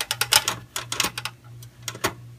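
Long magnetic-tip screwdriver backing out the PCI backplate screw in a metal server chassis: a quick run of irregular metallic clicks and ticks, over a steady low hum.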